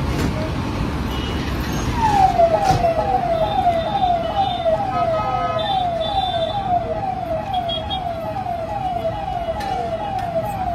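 An electronic siren sounding a fast, repeating falling note, about two and a half sweeps a second, which starts about two seconds in. Steady traffic rumble lies underneath.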